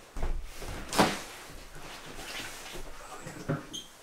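Refrigerator door being opened and its contents handled: a sharp knock about a second in, soft rummaging noise, and a click near the end.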